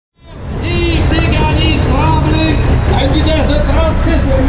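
Semi truck's diesel engine running close by with a steady low rumble, fading in over the first half second, with a voice over a loudspeaker on top.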